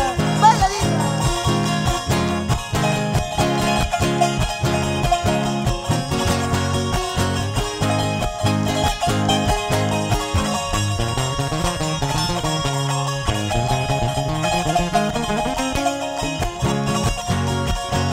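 Live band playing an instrumental break with a steady dance beat, led by plucked charango and acoustic guitar; partway through, a low line steps down and then climbs back up.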